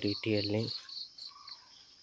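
An insect chirping, cricket-like, in an evenly spaced series of short high notes, about five a second, that stops about a second and a half in.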